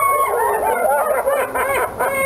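Men laughing hard in quick, loud bursts of pitched "ha" syllables, after a long high-pitched vocal cry that trails off just after the start.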